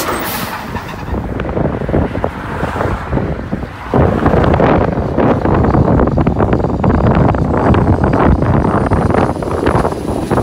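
Heavy diesel dump trucks driving past on a road, engine and tyre noise. The sound gets suddenly louder about four seconds in and stays loud as the next truck approaches and passes close.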